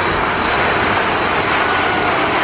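Loud, steady rushing roar of a dark indoor ride in motion, the sound of the ride vehicle and the air rushing past it, with a faint steady tone coming in near the end.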